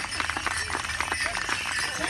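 Bells and metal jingles on powwow dancers' regalia jingling and clinking in quick, irregular strokes with the dancers' steps.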